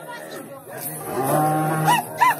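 Livestock calling, with one long, low moo in the second half.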